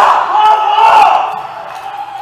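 Several high-pitched voices shouting together in long, drawn-out calls, loud and overlapping, fading off in the second half.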